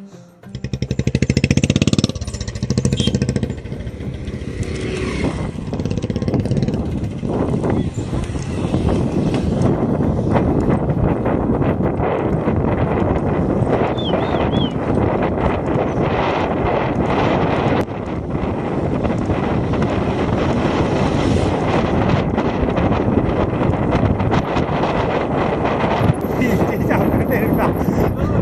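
Wind buffeting the microphone of a handlebar-mounted camera on a road bicycle riding at speed: a loud, steady rushing that sets in about half a second in.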